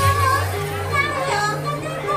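Live Javanese gamelan accompaniment for an ebeg (kuda lumping) trance dance, with sustained low tones and a wavering vocal melody line, over crowd voices.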